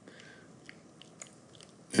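Quiet room tone with a few faint, short clicks, two of them a little clearer near the middle.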